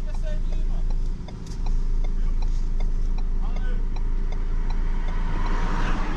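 Ford Ranger pickup's engine running with a low steady rumble, heard inside the cabin as the truck sits at a stop and then begins to roll off slowly. A light regular ticking, about two ticks a second, runs through the rumble.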